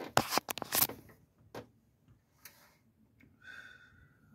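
A quick cluster of sharp clicks and knocks in the first second, then a lone click and a short scrape, and a thin steady squeal near the end.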